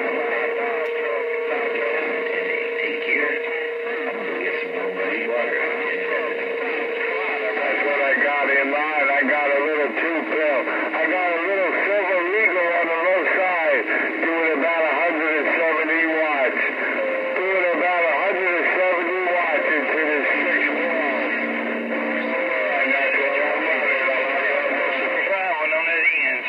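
Stryker SR-955HP radio receiving long-distance skip through its speaker: garbled voices talk over one another in a thin, band-limited sound. Steady whistling tones under them change pitch a few times.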